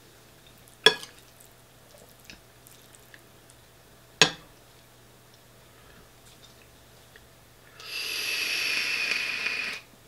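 A metal fork clinks sharply against a ceramic bowl twice, about a second in and again about four seconds in. Near the end, about two seconds of steady hissing with a faint whistle as an e-cigarette is drawn on.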